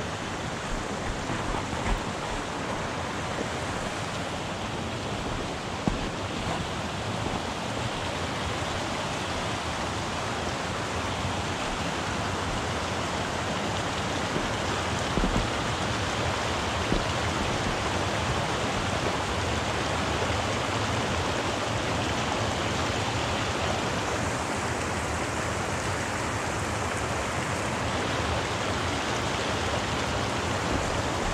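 Pecos River running over rocks: a steady rushing of shallow water that grows slightly louder, with a few faint knocks.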